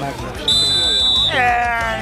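Referee's whistle blown for full time: one long, steady, high blast starting about half a second in, followed by a lower drawn-out tone.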